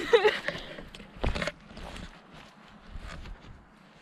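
Footsteps and rustling through grass and garden plants, with a short snatch of a voice at the start and a single louder thump a little over a second in.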